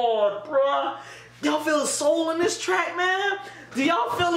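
Vocals from a hip-hop track playing back: a voice singing or rapping in phrases, with two short pauses.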